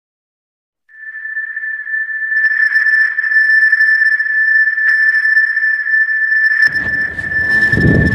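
A steady, high-pitched electronic tone fades in about a second in and holds at one pitch. A low rumble joins it near the end.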